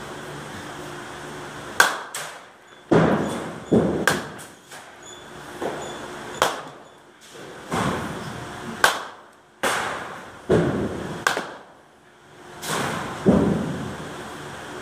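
Baseball bat striking balls in a batting cage: a series of sharp cracks, one every second or two, some followed by a swell of rushing noise.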